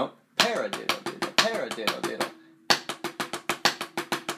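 Drumsticks playing paradiddle-diddles (right-left-right-right-left-left) on a drum practice pad: two quick runs of evenly spaced strokes with a short break between, the first note of each group accented. A voice speaks the "para-diddle-diddle" syllables along with the strokes.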